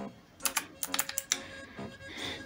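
Keys on a backlit computer keyboard being pressed: a quick run of about ten sharp key clicks starting about half a second in, then one more near the end.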